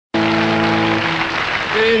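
Audience applauding over a rock band's held final chord, which stops about a second in while the clapping continues.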